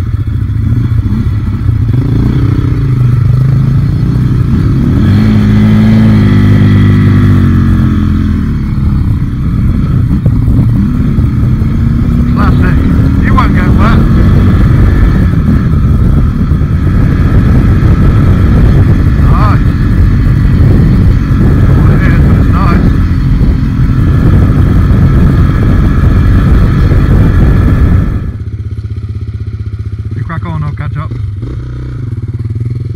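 Enduro motorcycle engine heard from the rider's own bike, rising and falling in pitch as the throttle is worked along a trail. About two seconds before the end it drops suddenly to a quieter, steady running sound.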